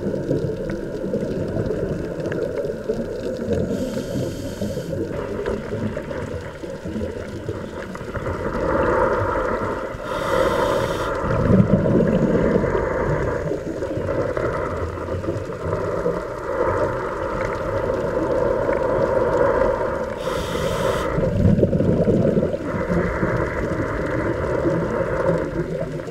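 A scuba diver breathing through a regulator underwater: swells of air noise and bursts of exhaled bubbles come round every several seconds over a steady underwater rumble.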